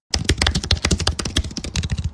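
Fast run of computer-keyboard typing clicks, a sound effect of the kind laid under an on-screen title being typed out.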